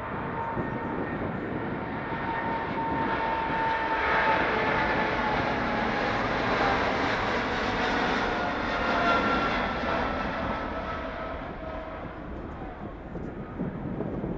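Boeing 777 twin jet engines at takeoff thrust as the airliner rolls past down the runway and lifts off. The roar swells to its loudest about halfway through and then fades, and the engines' whine drops in pitch as the plane goes by.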